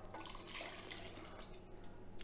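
Faint dripping and trickling of liquid from a tipped steel pan into a rice cooker.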